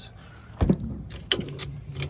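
Steel ratchet buckle of a tie-down strap being handled: a dull thump about half a second in, then a few short metallic clicks.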